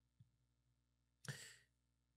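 Near silence, broken by one short breath into a close microphone, a sigh, about a second and a quarter in.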